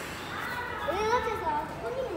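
A young child's high voice making wordless sounds that slide up and down in pitch, starting about half a second in, over steady station background noise.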